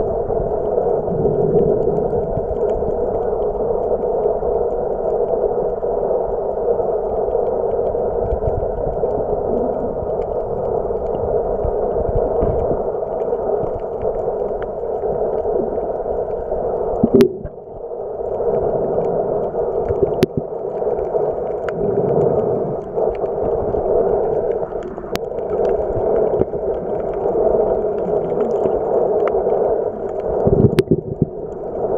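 Steady, muffled underwater noise picked up by a camera held just below the surface, with a few sharp faint clicks and a brief drop about 17 seconds in.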